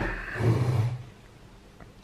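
A man's short, breathy hummed "hmm" close to the microphone, lasting about a second.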